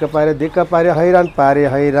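Speech only: a person talking, with no other sound standing out.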